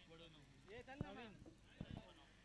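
Faint voices calling, with two sharp clicks, one about a second in and one near the end.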